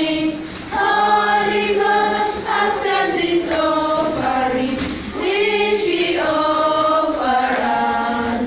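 A group of children singing together without accompaniment, in long held phrases with short pauses for breath about half a second in and again around five seconds in.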